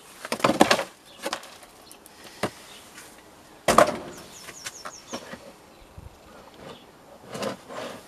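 Plastic garden trays being handled and set down on a potting bench: light rustling and scraping, with a sharp knock a little under four seconds in.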